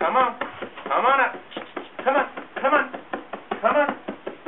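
A man's voice calling a dog up onto a mattress in short, repeated coaxing calls, about five in four seconds. Light pats of his hand on the mattress come between the calls.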